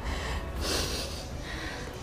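A woman's single noisy breath through the nose about half a second in, over a steady low hum.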